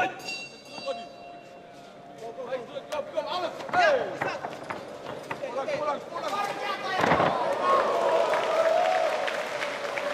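Indistinct voices of people talking and calling out. A sharp knock comes right at the start, followed by a brief high ringing.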